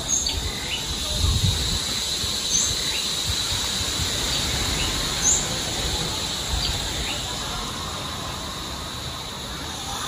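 Outdoor birdsong: a few short, high chirps a couple of seconds apart over a steady high-pitched hum, with an uneven low rumble underneath.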